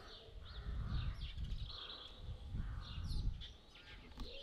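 Parrot giving faint, scattered squawks, over a low rumble.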